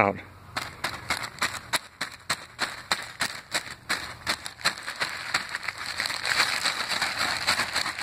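A clear plastic bag crinkling and crackling in quick, irregular clicks as it is shaken and tapped around a dried onion seed head to knock the seeds loose. The sound eases into a softer, steadier rustle in the last few seconds.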